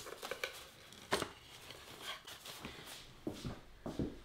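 Light knocks and faint scraping as a glazed, matted photograph with foam-core backing is pressed down into a wooden picture frame, the clearest knock about a second in.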